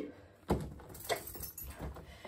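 A door being tried and not opening: clunks against a white uPVC door, with a sharp knock about half a second in and a lighter one a little after a second.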